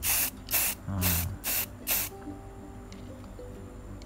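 Aerosol spray-paint can sprayed in five quick hissing bursts over about two seconds, a can with strong propellant pressure.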